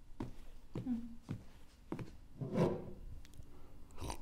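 Footsteps on a hard indoor floor, about two steps a second, as a person walks up.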